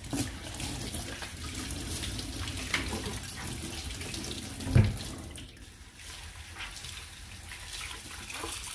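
Kitchen tap running into a stainless steel sink while cookware is scrubbed and rinsed under it, with small knocks of the pans. A single loud thump comes a little before five seconds in.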